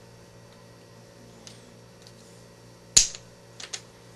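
A single sharp click about three seconds in, then two fainter clicks just after: small hardware being handled, a cap-head screw knocking against the plastic bulkhead brace as it is fitted into its hole. A low, steady hum underneath.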